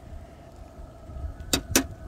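A low steady rumble, with two sharp clicks close together about a second and a half in.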